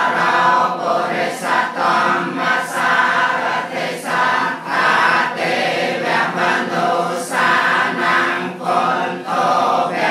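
Group of voices chanting Buddhist devotional chant together in unison, a continuous sung recitation with short breaks for breath about once a second.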